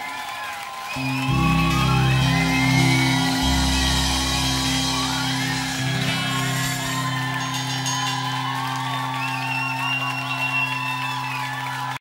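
Live band playing the song's outro without vocals: low notes begin about a second in and are held steadily under gliding higher lines.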